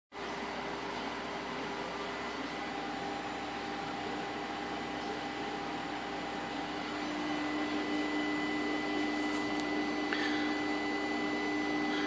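Steady electric hum of an Opel Signum swirl-flap actuator motor driven by a scan tool's actuation test, growing a little louder about seven seconds in. The motor is straining: the owner finds it very weak and worn, with a faulty end-position sensor, behind fault codes P1112 and P1113.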